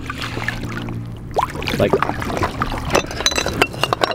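Water lapping around a diver at the side of an inflatable boat, with a few light glass clinks near the end as recovered old bottles are knocked or set down on the boat, over a steady low hum.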